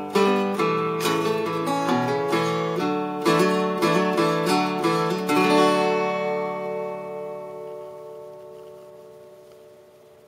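A small-bodied acoustic guitar plays the closing chords of a song, strummed about twice a second. Then a final chord is left ringing and slowly fades away over the last four seconds.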